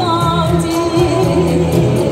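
A woman singing a Chinese pop song into a handheld microphone over a recorded backing track with a steady, repeating bass line. She holds a long note with vibrato through about the first half.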